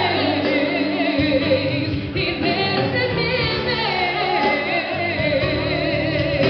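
Live gospel song: a woman singing with vibrato into a microphone over band accompaniment, with other voices joining in.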